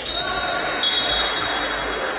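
Basketball game court sound just after a made free throw: the ball bouncing on the hardwood floor and players' voices in the hall, with a high steady squeal holding for most of the two seconds.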